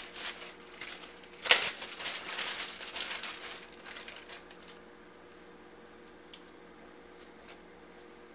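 Plastic zip-top bag crinkling as an onion slice is taken out of it: a sharp snap about a second and a half in, then about three seconds of rustling, and a few faint clicks later.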